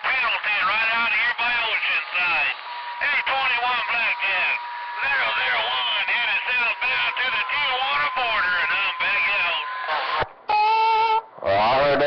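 CB radio chatter: voices coming through a receiver speaker, thin and unintelligible, with a steady whistle under them from about three to ten seconds in. A short electronic beep sounds near the end.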